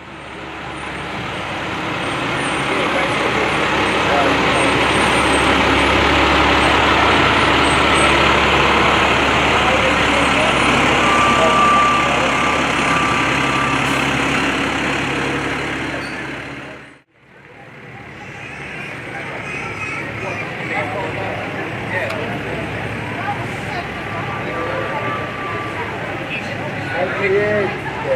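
A fire engine passing close by, its engine noise swelling up and then easing off, with a brief steady high-pitched tone about halfway through. After a sudden cut, quieter street sound with voices.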